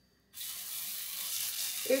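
Potato pancake batter frying in hot oil in a frying pan: a steady sizzle that starts abruptly about a third of a second in, after a moment of near silence.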